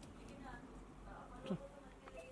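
Faint, indistinct voices in a room, and a short sharp sound falling quickly in pitch about one and a half seconds in.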